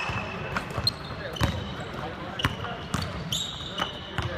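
Basketballs bouncing on a hardwood court during a team practice, a sharp bounce every half second to a second. Short, high sneaker squeaks come in between, the longest near the end.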